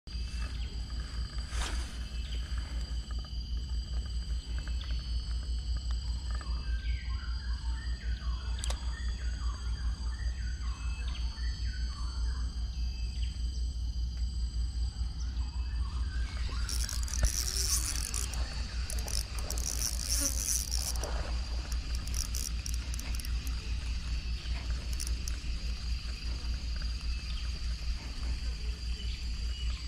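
Insects buzzing steadily in high thin tones over a low rumble, with a run of louder, high-pitched buzzing bursts a little past the middle. Faint short chirps come in before that.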